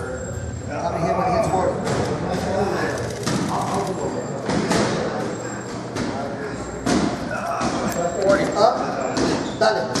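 Busy boxing-gym background: voices talking, with sharp thuds every second or two in a large, echoing room.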